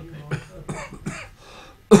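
A sharp, loud cough near the end, after a second or so of short, low voice sounds from the room.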